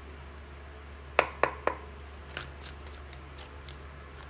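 Tarot cards being handled and shuffled in the hands: three sharp card clicks about a second in, then a run of lighter, quicker clicks.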